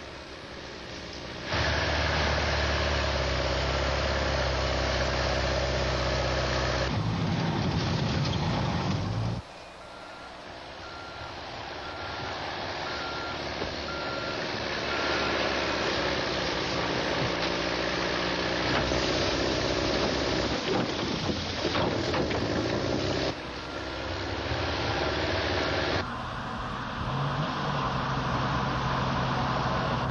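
Snow plow truck engine running, with a reversing alarm beeping steadily through stretches of the middle. The sound changes abruptly several times.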